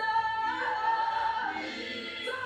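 Gospel worship singing: voices hold long, sustained notes of a French-language praise song, with no clear accompaniment.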